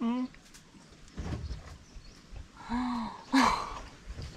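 A person's short wordless reactions to chili-hot food: a brief voiced 'mm' at the start, a falling 'ooh' around three seconds in, then a loud breathy exclamation just after it.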